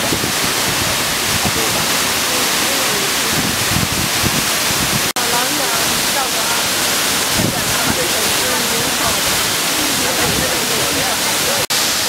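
Large waterfall, a loud steady rush of falling water, with people's voices faintly audible over it. The sound cuts out for an instant twice, about five seconds in and near the end.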